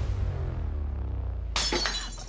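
Low, steady dramatic film music, then about one and a half seconds in a drinking glass hits a stone-tiled floor with a sudden loud crash that fades quickly.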